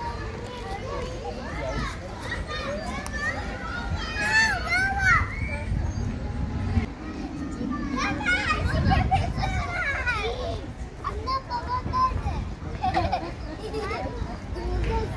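Children's voices calling and chattering as they play, with loud high-pitched shouts about four to five seconds in and again from about eight to ten seconds in.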